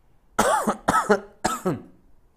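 A man coughing three times into his fist, the coughs coming about half a second apart.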